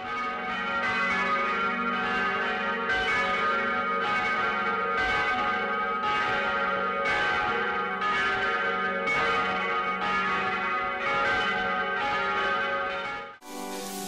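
Church bells ringing, a new stroke about once a second over long overlapping tones. The ringing cuts off suddenly near the end.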